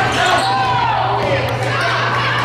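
Basketball dribbled on a hardwood gym floor, bouncing in quick repeated strikes, with voices calling out across the gym over it.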